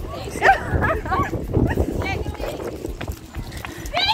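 Young women's voices, short excited vocal sounds and chatter without clear words, over a low rumble on the phone's microphone as it is swung about.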